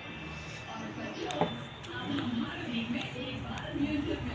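A woman's voice speaking over faint background music, with one sharp click about one and a half seconds in.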